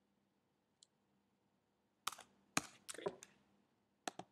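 Quiet clicks from working a computer's keys and buttons: one faint click about a second in, then a quick run of several sharp clicks about halfway through.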